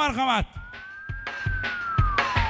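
A single whistle-like tone enters about half a second in, rises slightly, then glides slowly downward. It is preceded by the end of a run of short, arching pitched vocal calls.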